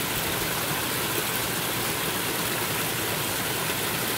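Water from a small rock waterfall in a pond stream, rushing and splashing steadily over stones.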